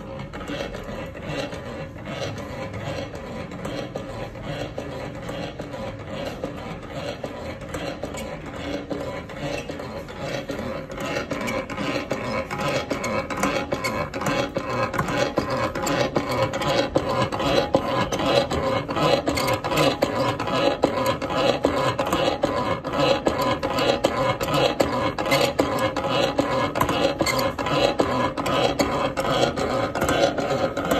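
Electric crockmeter running: a steady motor hum under a fast, continuous rasping as its cloth-covered rubbing finger scrapes back and forth over the printed T-shirt fabric in a colour-fastness-to-rubbing test. The rasping grows louder after about ten seconds.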